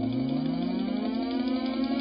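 Rising whine of a car accelerating, climbing in pitch over the first second or so, laid over a sustained ambient music drone.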